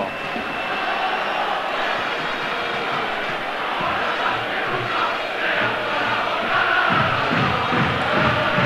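Football stadium crowd: a steady din of many voices.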